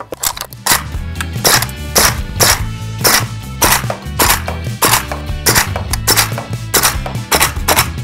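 GHK AK74U gas-blowback airsoft rifle firing shot after shot, about two sharp cracks a second, as a magazine of green gas is emptied in a capacity test. Background music plays underneath.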